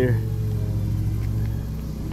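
Steady, low-pitched engine drone with an even hum that does not change, and a few faint ticks in the second half.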